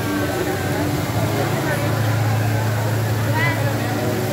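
Indistinct chatter of a crowd of people, with no single voice standing out, over a steady low hum that grows stronger about a second in.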